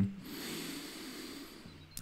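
A person's long, deliberate in-breath, drawn steadily for about a second and a half, taken as a deep inhale in a guided breathing exercise.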